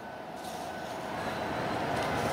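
City street noise, mostly traffic, steady and slowly getting louder.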